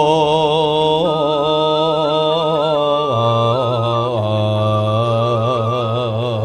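A dalang's sulukan: a male voice chanting long, wavering held notes in Javanese, dropping to a lower pitch about three seconds in, with gamelan accompaniment.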